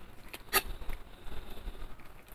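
Chef's knife slicing through a roast beef tri-tip on a wooden cutting board, with a few short faint clicks of the blade and carving fork, the loudest about half a second in.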